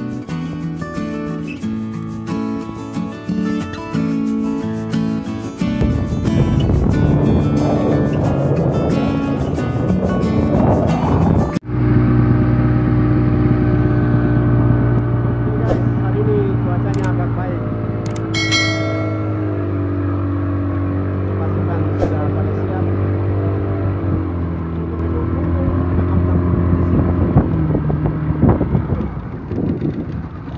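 Background music for about the first twelve seconds, then an abrupt cut to a boat's engine running steadily under way, its pitch shifting slightly now and then.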